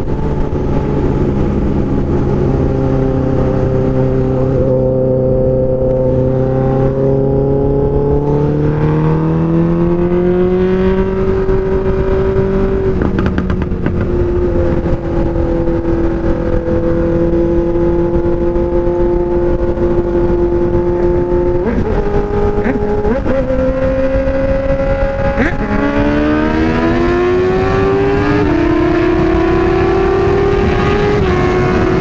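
Honda CB600F Hornet's inline-four engine running under way with a loud aftermarket exhaust, the note climbing as it accelerates. The pitch drops suddenly a few times in the second half, as at gear changes, then rises steadily again near the end.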